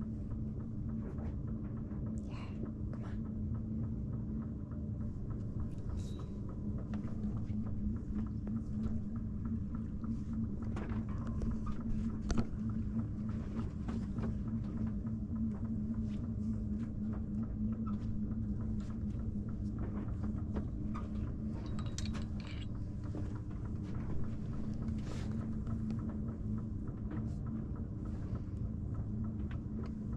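Sailboat's engine running steadily with a low, even hum, with scattered faint knocks and clicks and one sharper knock about twelve seconds in.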